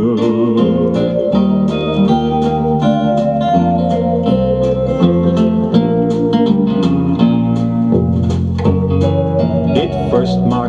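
Vinyl LP on a turntable playing the instrumental break of a light folk-style pop song, with plucked notes over a steady, even rhythm and no singing.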